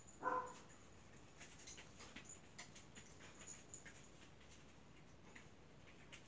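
Border collie giving one brief whimper about a third of a second in, followed by only faint light ticks and shuffles.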